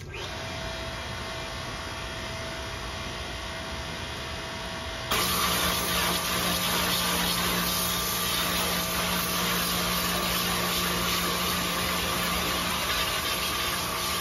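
Pressure washer running steadily. About five seconds in, the wand opens and a loud hissing spray sets in, with the washer's motor running under load as the jet washes the truck's metal body.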